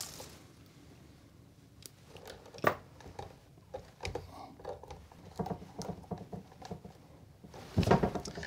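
Hand tools working solid copper electrical wire: one sharp snip of pliers cutting the wire about two and a half seconds in, then a scatter of small clicks and rustles as the wire is handled with pliers and strippers.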